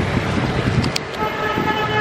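Street traffic noise, with a vehicle horn sounding one steady toot of about a second near the end. A short click comes just before the horn.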